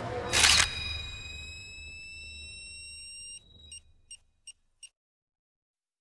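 A camera takes a photo with a loud, short snap of shutter and flash, followed by a high whine that fades out over about three seconds. Near the end come four short, evenly spaced high beeps, over a low drone that dies away.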